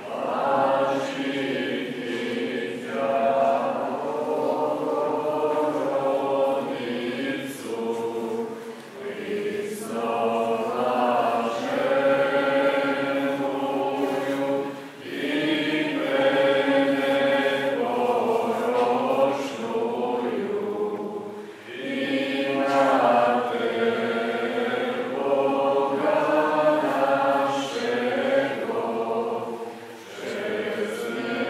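A choir singing Orthodox liturgical chant in long sustained phrases, breaking briefly for breath roughly every six seconds.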